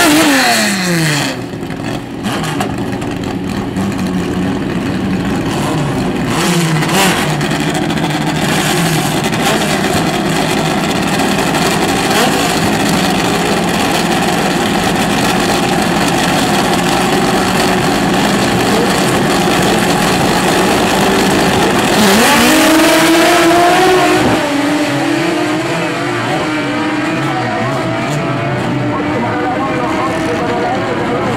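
Drag-racing car engines idling loudly at the start line after a rev that rises and falls, then revving hard as the cars launch about three quarters of the way through, the pitch climbing and stepping as they pull away down the strip.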